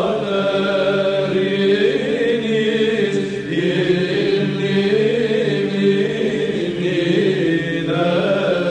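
Greek Orthodox Byzantine chant: voices singing a slow melody over a steady held drone note.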